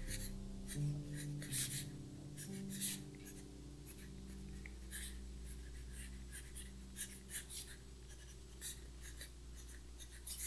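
Apple Pencil tip scratching and tapping on the iPad's glass screen in short, quick drawing strokes at irregular intervals, the louder ones in the first few seconds.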